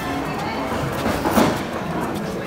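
Background music with indistinct voices over the steady noise of a busy workroom, and a brief louder sound about a second and a half in.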